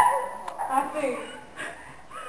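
A dog yipping and whimpering, a few short high calls.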